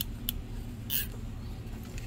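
Light handling sounds of a hot glue gun and thin wooden craft pieces on a tabletop: a faint click, then a short scrape about a second in, over a low steady hum.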